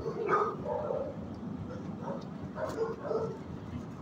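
Dogs barking and yipping in a shelter kennel: several short calls, a cluster near the start and another a little before the end.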